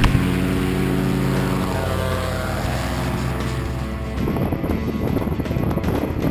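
Paramotor's two-stroke engine and propeller running steadily at a constant pitch. About four seconds in it gives way to gusty wind noise on the microphone.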